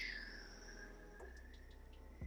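Felt-tip marker squeaking faintly on paper as it draws one long curved stroke: a thin, high squeak that drops in pitch at the start and then holds steady.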